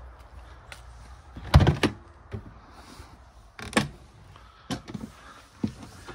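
Motorhome habitation door being opened and shut: a loud clunk about a second and a half in, another about two seconds later, then lighter knocks as someone steps up into the van.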